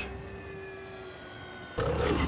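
Soundtrack of an animated TV episode playing at low level: a faint held drone of several thin tones sliding slowly down in pitch, broken near the end by a sudden loud low rumble.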